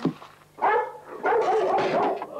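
A Labrador barking: a short bark just over half a second in, then a longer, louder one near the end.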